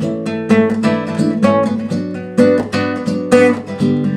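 Nylon-string classical guitar strummed in a steady rhythm of chords, with sharp strokes several times a second and ringing notes between them.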